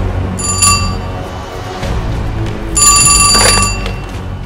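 A landline telephone ringing twice over background music: a short ring near the start and a longer ring of about a second near the end.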